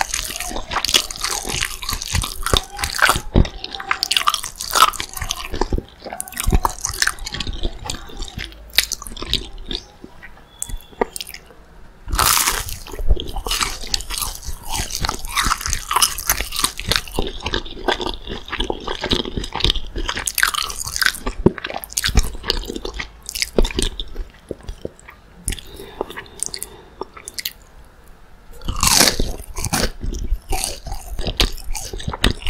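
Close-miked biting and chewing of breaded McDonald's spicy chicken nuggets: a steady run of crisp crunching and wet chewing clicks, with a couple of louder crunches along the way.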